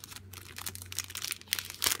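Clear plastic sleeve and tissue paper crinkling as a small card is handled, with irregular crackles and a louder burst of crinkling near the end.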